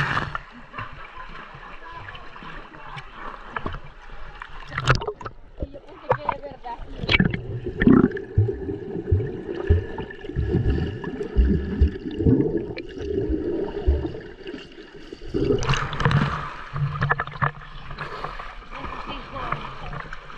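Splashing and gurgling water from swimmers, heard by a camera at the waterline. For several seconds in the middle the camera is under the water: the sound turns dull and muffled with soft knocks from kicking legs, then clears again when it surfaces.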